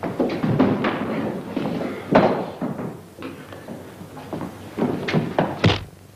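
Fistfight sounds: a run of dull thuds and knocks from blows and bodies colliding, with a hard knock about two seconds in and several sharp ones close together near the end.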